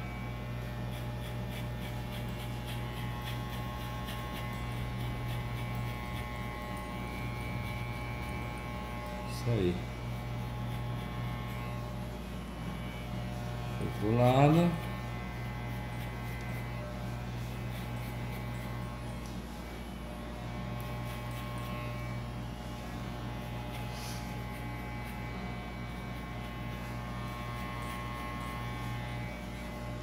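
Corded electric hair clipper with a number 1 guard running with a steady hum while it cuts short hair low on the back and sides of the head. Two brief rising vocal sounds break in, about ten and fourteen seconds in.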